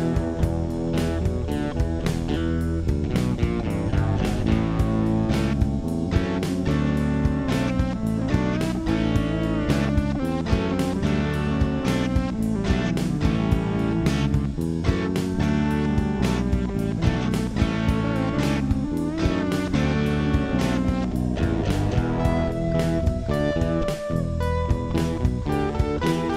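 Background music with guitar and a steady beat.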